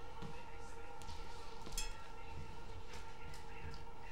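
Steady hum with a few light clicks, and a brief high squeak a little before the middle.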